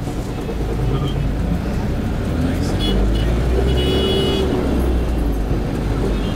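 Minibus engine and road rumble heard from inside the passenger cabin while driving, a steady low drone that grows louder about half a second in.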